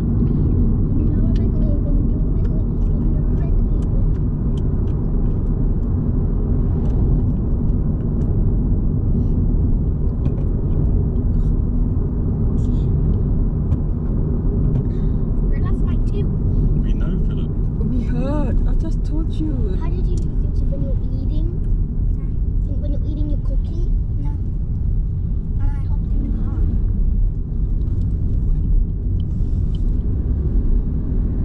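Steady low rumble of a car driving, heard from inside the cabin: engine and tyre noise on the road. Quiet voices come in briefly, most clearly about two-thirds of the way through.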